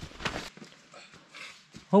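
Footsteps and rustling on a muddy forest path, with a brief rough handling noise at the start and faint scattered ticks after it; a man's voice starts at the very end.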